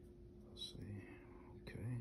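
A man's voice, very quiet and whispered, in two short snatches about half a second in and near the end.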